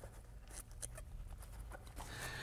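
Faint handling noise of plumbing parts being fitted: light scrapes and a few small clicks, over a low steady hum.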